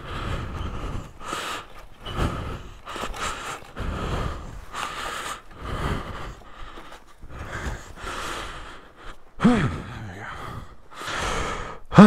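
A man breathing hard, in and out about once a second, winded from the effort of wrestling a heavy wire-loop rail gate, with a brief grunt about nine and a half seconds in.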